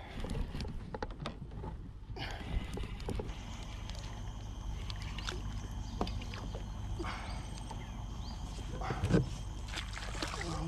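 Spinning reel being cranked as an angler fights a hooked fish from a kayak, with scattered knocks of gear against the hull and a steady low rumble of wind and water. A louder knock comes about nine seconds in.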